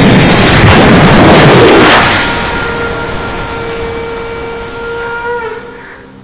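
Dramatic film sound effect: a loud rushing boom for the first two seconds, fading into a sustained horn-like tone that holds steady and dies away about five and a half seconds in.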